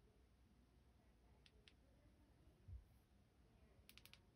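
Near silence with a few faint clicks of a Folomov EDC C1 flashlight's tail switch being pressed: two quick ones about a second and a half in and a couple more near the end. A soft low knock comes shortly before the end.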